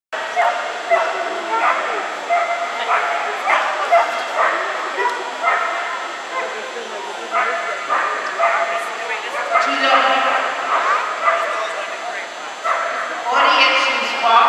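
A dog barking repeatedly in a steady string, about one to two barks a second, with voices in the background.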